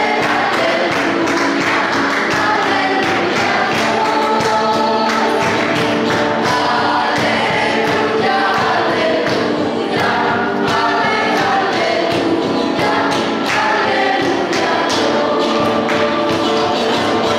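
A group of voices singing a Christian worship song with instrumental accompaniment and a steady beat.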